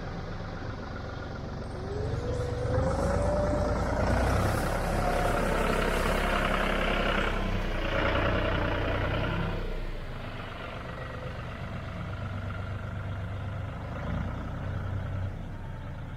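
John Deere 5210 tractor's diesel engine running as it tows, with a rising whine about two seconds in; it grows louder through the middle as the tractor comes close, then eases off.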